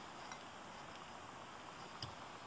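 Faint room tone: a steady low hiss with no distinct sound.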